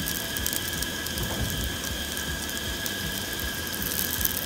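Sweet potato cubes sizzling in hot oil in an anodized aluminium fry pan on a propane camp stove: a steady, dense crackle.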